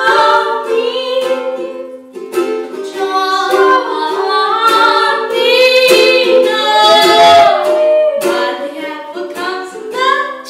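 A woman singing to her own strummed ukulele, an unamplified acoustic performance in a small room.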